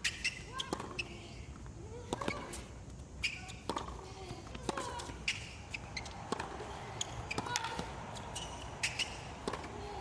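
A tennis rally on a hard court: the ball is struck back and forth with sharp pops about once a second, with short squeaks and voice-like sounds between the shots.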